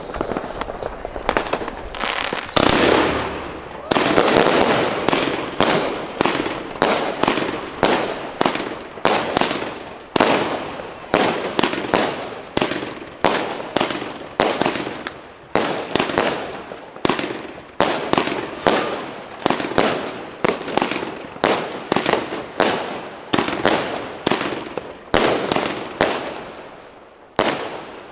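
A 25-shot fan cake of fireworks firing. After a faint crackle in the first couple of seconds, a dense, loud salvo of launches and bursts comes at about two and a half seconds in, then a steady run of single shots and bursts about every half second until near the end. The cake was lit from the wrong end, so the salvo meant as the finale comes first.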